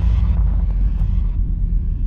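Deep, steady low rumble laid under the animation as a sound effect for the earth's constant background tremor. A fainter hiss over it fades away partway through.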